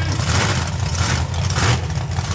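Monster truck engines idling with a loud, steady low rumble.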